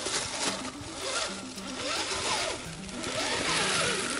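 Electric motor and drivetrain of a Redcat Gen8 Scout II RC crawler whining as it is throttled over rocks, rising and falling in pitch twice. Background music with a stepped bass line runs underneath.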